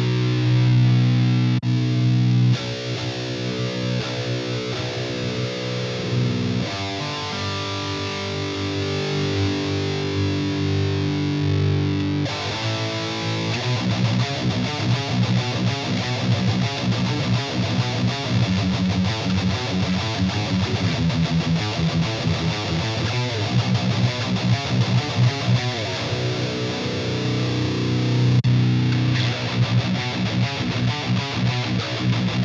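Heavily distorted electric guitar played through a Mesa Mark IV amp model with the Mesa Boogie Five-Band Graphic EQ pedal switched on. It plays ringing chords held for a few seconds each, then quicker, choppy rhythm riffing from about twelve seconds in.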